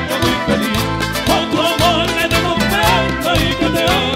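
An Ecuadorian sanjuanito played by a band: a man sings with vibrato over guitars and a steady, regular beat.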